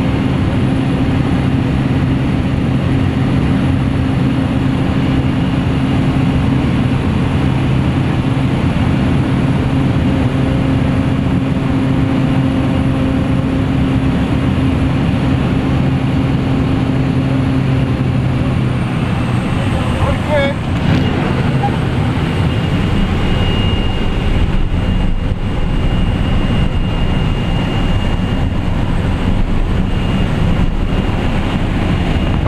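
Light aircraft's engine and propeller droning loudly inside the cabin. About two-thirds of the way through, the engine note drops and its steady tones fade, leaving a rougher rush of wind noise: typical of power being reduced on the jump run before the skydivers exit.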